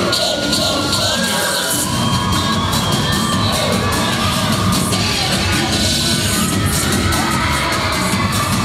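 Loud cheerleading routine music, with its heavy bass beat coming in about two seconds in. A crowd cheers and screams over it in bursts, near the start and again about six seconds in.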